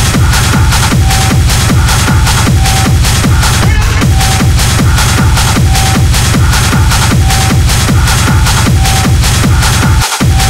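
Techno playing in a continuous DJ mix: a steady kick drum about twice a second over a heavy bass line, with a short synth note repeating about once a second.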